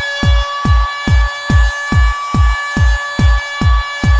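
Electronic dance music from a bounce/scouse house DJ mix: a steady four-on-the-floor kick drum at about two and a half beats a second under sustained synth chords.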